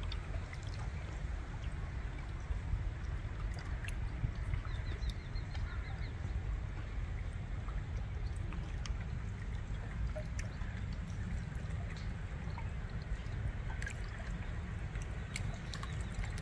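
River water lapping and trickling steadily at the bank, over a low rumble. A brief run of faint bird chirps comes about five seconds in.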